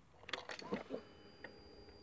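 Faint steady electric hum with a few thin high tones, starting about a second in, as a Yamaha YZF-R6's ignition is switched on and its dash lights up: the fuel pump priming. A faint tick falls in the middle.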